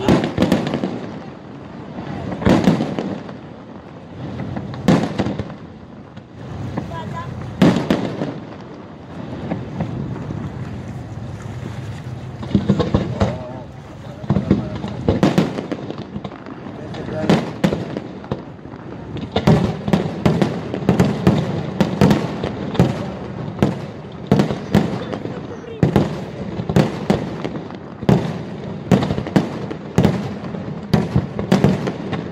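Aerial fireworks shells bursting, a loud bang every two or three seconds at first, then a quicker run of bangs, about two a second, through the second half.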